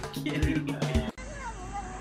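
Music with a steady drum beat that cuts off abruptly a little past halfway, followed by a domestic cat meowing in long, wavering calls that slide down in pitch.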